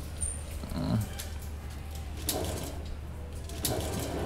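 Folding metal scissor gate of an old cage lift being pulled by hand, giving a few short clicks and rattles over a steady low hum.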